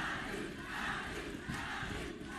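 Spectators in a fight crowd shouting and cheering, a mass of voices that swells and eases.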